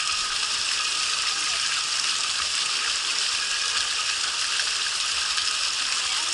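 Water running steadily down the entry of a water slide, an even, continuous hiss with no break.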